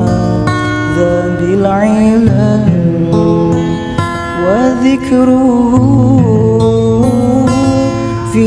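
Acoustic sholawat: a woman sings a devotional melody in long held notes with ornamental slides, over acoustic guitar accompaniment.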